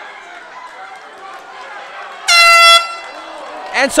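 Round-ending horn in an MMA cage bout: one loud, flat, steady blast of about half a second, a little over two seconds in, marking the end of the round. Low arena crowd noise comes before it.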